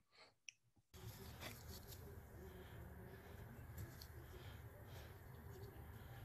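A few faint mouse clicks, then about a second in a faint, steady background noise with a low hum starts as an embedded web video begins playing.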